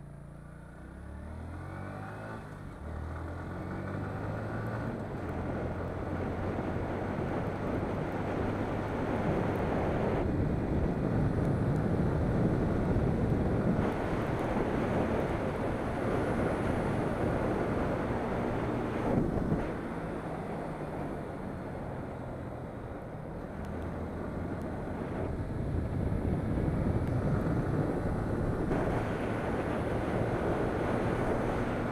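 Motorcycle engine accelerating, its note rising and dropping back with gear changes in the first few seconds. Wind and road rush on the microphone then builds and covers most of the engine at riding speed, easing briefly around twenty seconds in when the engine note shows through again.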